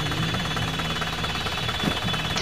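Light truck's engine idling steadily, with a low hum and a fast, even ticking.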